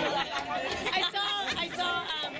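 Several people talking at once near the microphone: overlapping spectator chatter, with no one voice clear enough to follow.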